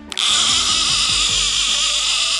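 Fishing reel's clicker buzzing rapidly and steadily as the spool turns, with a brief break right at the start.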